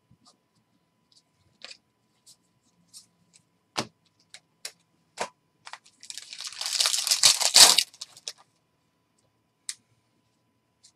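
Scattered light clicks of trading cards being flicked through and set down on the table, then, about six seconds in, a crinkling tear of about two seconds as a card pack's wrapper is ripped open.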